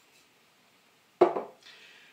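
A glass oil-lamp chimney set down on a wooden table: a single sharp clunk a little over a second in.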